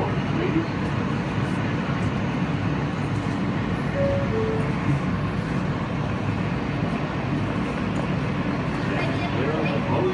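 Steady hum and rumble of a subway car standing in a station with its doors open, with a short two-note falling chime about four seconds in, typical of the car's door chime. A voice, like a recorded announcement, comes in near the end.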